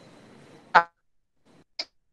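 Video-call audio breaking up: faint hiss with a thin steady high tone, a clipped fragment of a voice about three-quarters of a second in, then dead silence broken by one short blip near the end.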